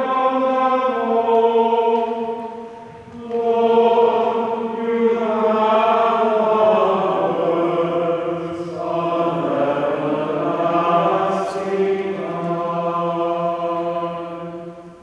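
Voices singing a slow liturgical chant in long held notes, with a short break about three seconds in.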